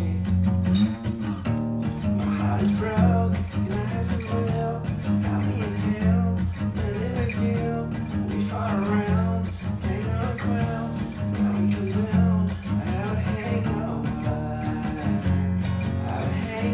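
Music: an acoustic guitar playing an instrumental passage of a song.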